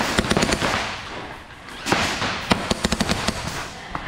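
Airsoft gunfire in rapid volleys of sharp snapping shots over a constant clatter, in two flurries: one in the first half second and another from about two and a half seconds in.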